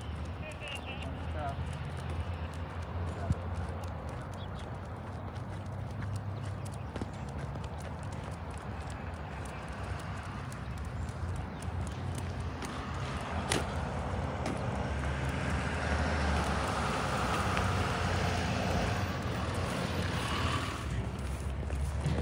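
Footsteps of people and dogs walking on a paved sidewalk under steady wind rumble on the microphone. A louder rushing noise swells about halfway through and fades near the end.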